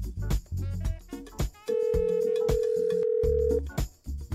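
Background music with a steady beat. About halfway through comes a telephone ring: a single steady electronic tone held for about two seconds, louder than the music.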